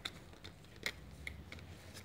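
A few faint, sharp clicks and taps of small toy objects being handled, heard near the start, just before a second in, and again a little later.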